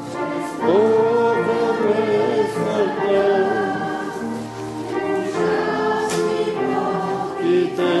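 Congregation singing a hymn together in long held notes that slide gently from one pitch to the next.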